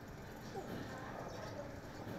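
A man breathing hard with effort while pushing a leg-press machine, with a short strained vocal sound about half a second in.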